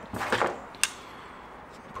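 Brief handling rustle, then a single light click a little under a second in, as an arrow shaft is set down onto a vane wrap on a foam pad; then quiet room tone.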